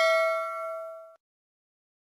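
Notification-bell chime sound effect: a bright bell ding with several tones ringing together, fading and then cut off abruptly about a second in.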